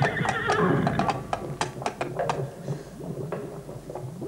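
A horse whinnying once, the call rising and then falling away over about the first second, followed by a few sharp knocks.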